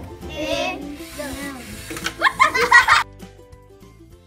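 A group of children counting down aloud over background music, the final count shouted loudly and high-pitched. The voices cut off suddenly about three seconds in, leaving only the music.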